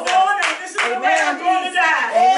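Hands clapping, a sharp clap about every half second, over raised voices calling out.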